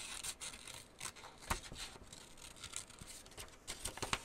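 Small craft scissors snipping through printed paper in short, irregular cuts, one louder snip about a second and a half in.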